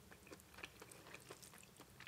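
Faint, irregular soft wet clicks and smacks of a person eating raw-shrimp papaya salad by hand, close to the microphone.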